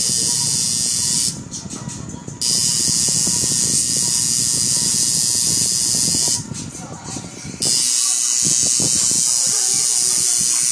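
Pen-style electric tattoo machine running with a steady high buzz, stopping twice briefly, about a second and a half in and again about six and a half seconds in, as the needle is lifted from the skin. Voices and music sound underneath.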